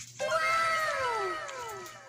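A drawn-out animal call that rises briefly and then slides down in pitch, fading out over about a second and a half.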